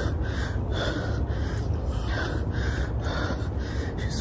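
A runner breathing hard in a steady rhythm while going uphill, over a constant low rumble.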